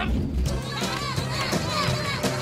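A group of cartoon lemmings chattering and squealing together in high voices, like a small cheering crowd, over music. A low rumble dies away about half a second in.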